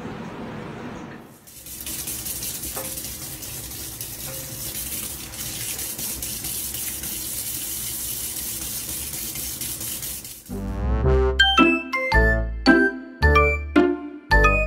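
Kitchen tap running a thin stream of water into a stainless steel sink, a steady hiss. About ten and a half seconds in, a louder, jingly tune with bell-like notes and a bass beat starts.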